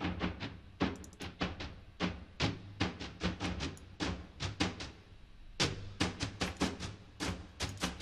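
A sparse synth melody of short, staccato bleeps playing back in an uneven rhythm, several notes a second.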